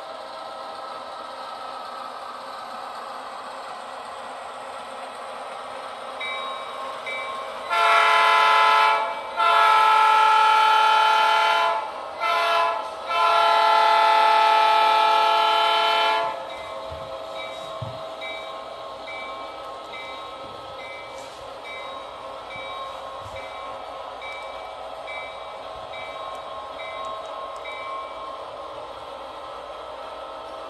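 A sound-equipped model diesel locomotive running with a steady engine hum. Its multi-tone horn sounds the grade-crossing pattern: long, long, short, long. After that a bell rings steadily at about one and a half strokes a second.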